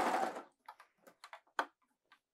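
Serger (overlocker) running, stopping about half a second in, followed by a few small, faint clicks and taps.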